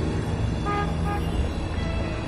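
Street traffic rumbling, with a short car horn toot less than a second in.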